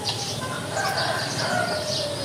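Birds calling: repeated high chirps, with a longer, lower pitched call through the middle.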